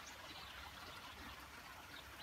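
Near silence: a faint, steady outdoor background hiss with no distinct sounds.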